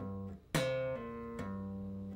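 Electric bass guitar played slowly: a held note dies away, then a sharply attacked note about half a second in rings on and steps to new pitches twice without a fresh pluck, a hammer-on and pull-off run.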